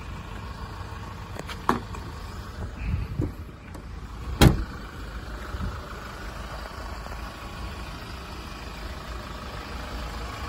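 Hyundai Grand Starex van engine idling steadily, with a sharp click about a second and a half in and a loud thump about four and a half seconds in, the rear tailgate shutting.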